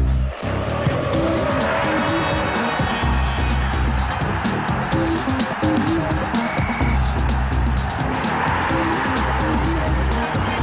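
Loud theme music for a TV sports programme's opening titles, with a driving beat and a deep bass figure that repeats about every three seconds.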